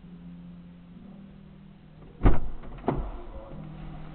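A low steady hum, then two loud thumps about two-thirds of a second apart a little past halfway, followed by a few lighter knocks.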